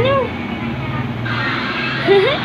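A baby's short, high-pitched babbling cry right at the start, rising and falling once, over a steady low hum. A broad rushing noise comes up about halfway through and carries on.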